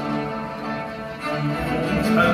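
Chinese traditional orchestra playing a soft passage of held low bowed-string notes, dipping in the middle and swelling again near the end.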